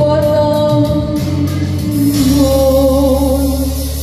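A woman singing a slow Vietnamese song live into a microphone over instrumental backing with a steady bass, holding long notes.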